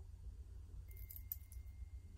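Quiet room with a low hum and a few faint light metallic clicks about a second in, from the stainless steel watch bracelet being handled as the watch is turned in the hand.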